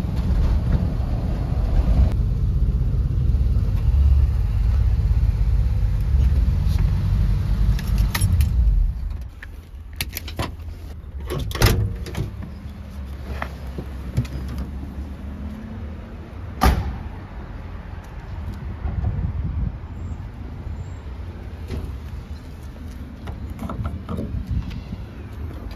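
Cabin noise of a 1986 Jeep Grand Wagoneer with its AMC 360 V8 while driving: a loud, steady low rumble. About nine seconds in, the rumble falls to a quieter low hum as the Jeep pulls up and stops. A few sharp clunks and clicks follow as the driver's door is opened.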